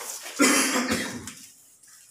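One short, loud cough about half a second in.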